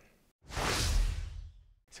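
A whoosh transition sound effect lasting just over a second, with a deep low rumble under a hissy sweep that fades away. It is set between two brief gaps of dead silence, marking an edit cut.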